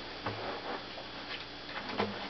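Faint scattered ticks and taps of hands handling an acoustic guitar, fingers settling on the strings and body just before playing, with a faint low hum underneath.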